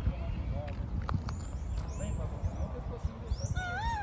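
Wind rumbling on the microphone outdoors, with small birds chirping now and then. A louder wavering call rises and falls twice near the end.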